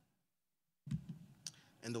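The sound drops out completely, then room noise returns abruptly. About one and a half seconds in comes a single sharp click from the key or clicker press that advances the presentation slide. A man starts speaking at the very end.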